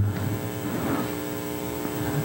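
Steady electrical mains hum with faint background noise and no distinct event.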